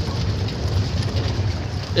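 Open-top safari jeep's engine running steadily as it drives, with wind noise on the microphone.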